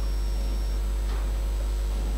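Steady low electrical hum on the studio microphone line, with faint room noise above it.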